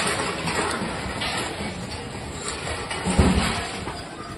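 Steady rushing noise of heavy rain on a phone microphone, with a single low thud about three seconds in.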